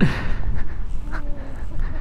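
Wind buffeting the microphone with a low rumble, and a breathy trailing-off laugh at the very start.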